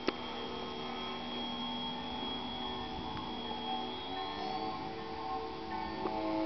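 Background music: held, sustained chords of steady tones, changing to new chords about two-thirds of the way through.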